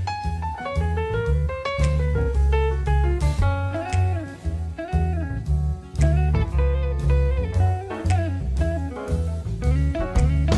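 Slow blues-rock instrumental: a guitar plays a lead line full of bent notes over bass and drums.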